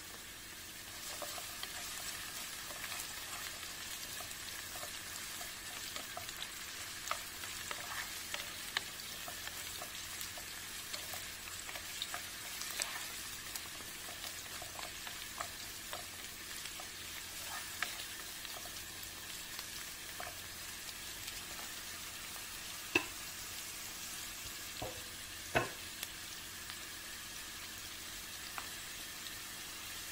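Chopped onion, garlic and carrots sizzling in oil in a pan as they are stirred, a steady frying hiss with many small pops and clicks. Two sharper knocks stand out near the end, about two and a half seconds apart.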